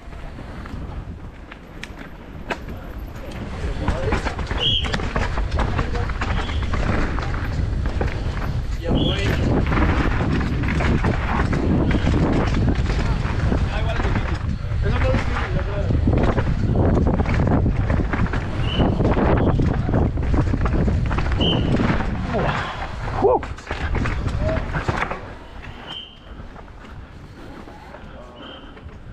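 Downhill mountain bike ridden fast over a rough dirt-and-root track, heard from a helmet-mounted camera: wind rushing over the microphone, tyres on loose dirt, and the bike's chain and suspension rattling with frequent knocks. The noise builds about four seconds in and eases near the end, with a few short high chirps heard over it.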